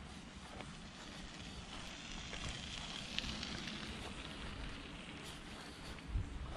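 Faint, steady outdoor background noise: a soft hiss with a few scattered small ticks.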